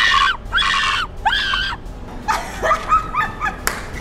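A woman laughing loudly in a run of high, pitch-bending bursts, gloating laughter. A single sharp click comes near the end.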